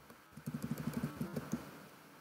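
A man's low, wordless murmuring or humming from about a third of a second in until near the end, over faint computer-keyboard clicks.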